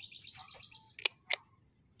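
Two short, sharp bird chirps about a second in, a third of a second apart, over faint outdoor background.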